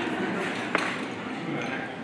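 Low chatter of a dinner crowd in a large room, with a single sharp clink of tableware ringing briefly about three quarters of a second in.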